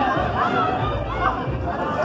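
Crowd of people chattering and calling out over music playing.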